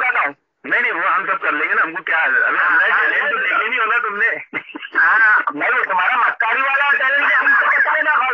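Continuous talking with a thin, telephone-like sound. There is a brief pause about half a second in.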